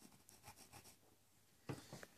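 Pencil scratching faintly on a wall as a mark is drawn at a fingertip: several short strokes in the first second. A brief tap follows near the end.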